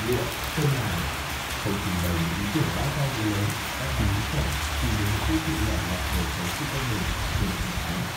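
Steady rain falling on a paved yard and garden foliage, an even hiss throughout, with indistinct low-pitched sounds underneath.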